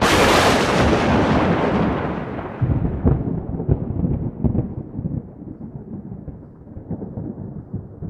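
Thunderclap sound effect: a sudden loud crack that fades over a few seconds into a low rumble, with scattered deep thumps and crackles running on.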